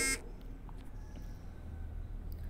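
A woman's voice finishes a word at the very start, then a pause filled only by a steady low hum and faint room tone.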